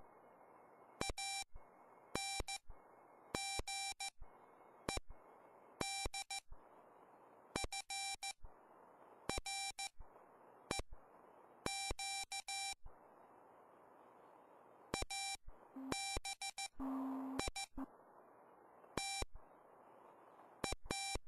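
Morse code sidetone from a RockMite 40 QRP transceiver, keyed by hand on a paddle: a steady high tone broken into dots and dashes, sent in groups of characters with short pauses, and receiver hiss filling the gaps. Near the end a lower steady tone sounds for about two seconds.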